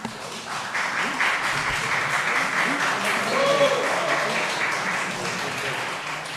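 Audience applauding in a hall, starting about half a second in and tapering near the end, with a few voices faintly heard over it.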